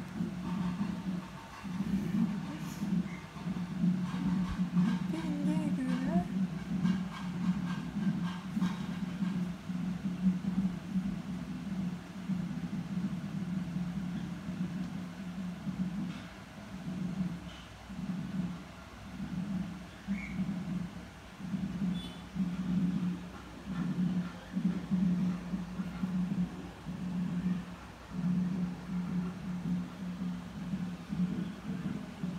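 A festival crowd in the street: voices and music mixed, with a low hum that keeps swelling and fading.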